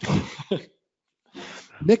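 A short, throaty vocal noise from a person on the call, then a brief gap and a breath before speech starts near the end.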